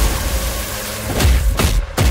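Action-trailer soundtrack: dramatic score mixed with heavy punch and thud impact effects, with a couple of hits about a second and a half in and a brief cut-out just before the end.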